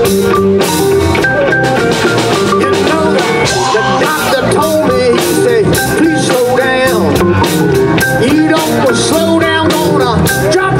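Live blues band playing on drum kit, bass and electric guitar, with pitch-bending lead lines over a steady beat.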